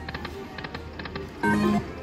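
Eyes of Fortune Lightning Link poker machine spinning its reels: a quick run of electronic clicks over a low steady tone, with a louder chime about one and a half seconds in as the reels stop.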